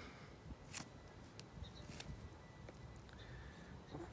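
Quiet outdoor background with a few faint short clicks, the clearest about a second in and again about two seconds in, as a pocketknife and scion stick are handled.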